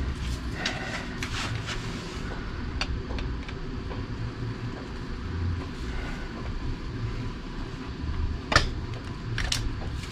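Scattered metal clicks and knocks of large bolt cutters being handled and their jaws set around a pushrod on a motorcycle V-twin engine, with two sharp clicks near the end, the first the loudest.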